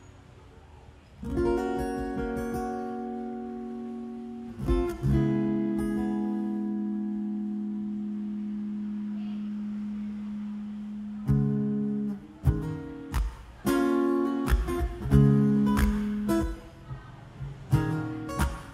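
A Martin DCME steel-string acoustic guitar is played unaccompanied. Two chords are struck and left to ring for several seconds each, then quicker strummed chords follow from about two-thirds of the way through.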